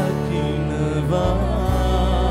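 Sinhala Christian worship song: a voice singing a wavering melody over steady bass and instrumental accompaniment, the bass shifting to a new note about a second in.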